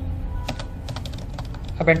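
Computer keyboard keys being pressed, a few separate clicks spread out over a steady low hum.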